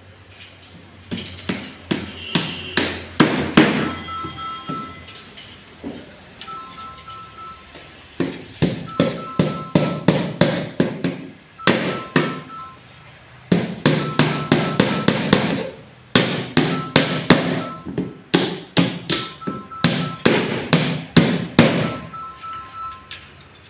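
Hammer nailing the timber boards of a wooden formwork box: runs of quick sharp blows, about three a second, with short pauses between the runs.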